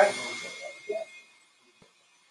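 A low hiss fades out in the first half-second, with faint murmured voices, then near silence.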